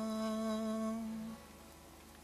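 A man's voice holding one long, steady note into a microphone, hummed or sung on a closed vowel, which stops about a second and a half in.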